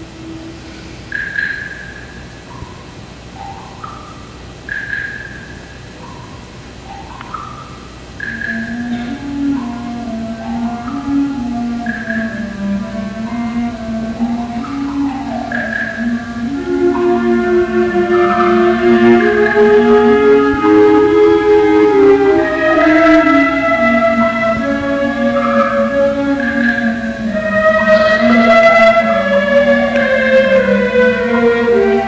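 High school wind ensemble playing: sparse short high notes about every three and a half seconds over sliding mid-range notes, then a low sustained line enters about eight seconds in and more parts join as the music grows louder.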